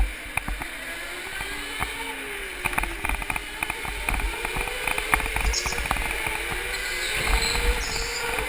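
Go-kart heard from on board: its motor's whine rising and falling in pitch with speed through the corners, over a steady low rumble and a rattle of frequent small knocks from the chassis on the track.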